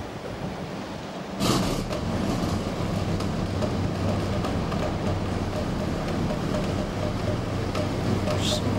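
Lifeboat's diesel engines starting up about a second and a half in, with a sudden burst of noise, then settling into a steady low idle.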